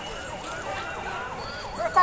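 A siren wailing in quick up-and-down sweeps over the noise of a street crowd.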